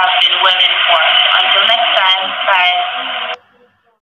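A person's voice, thin and narrow like speech heard over a radio or telephone, that cuts off suddenly about three and a half seconds in.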